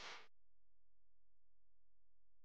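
Faint outdoor background hiss that cuts off abruptly a fraction of a second in, leaving near silence.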